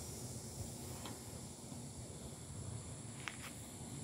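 Faint steady background noise with a few soft clicks, one about a second in and two close together a little after three seconds.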